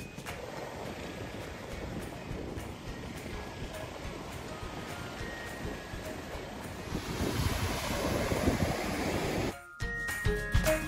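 Sea surf breaking and washing onto the shore, with wind on the microphone. The wave noise swells louder about seven seconds in and cuts off suddenly just before the end.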